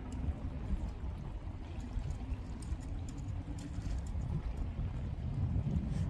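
Wind rumbling on the microphone over the wash of water against the rocks of a seaside breakwater, with a faint steady hum through the first half.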